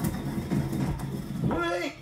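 Stone pestle grinding whole spices in a stone mortar: a low gritty scraping with small clicks. A short voiced sound comes near the end.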